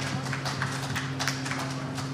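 Scattered handclaps from a panel audience, several irregular claps a second, over a steady low hum from the hall's PA system.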